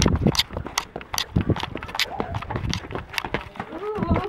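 Running footsteps in sneakers, quick irregular thuds and scuffs about three or four a second as several people run up wooden steps and onto a stone path. A short vocal sound comes right at the end.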